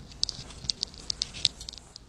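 A pen nib scratching on paper in a string of short, light strokes.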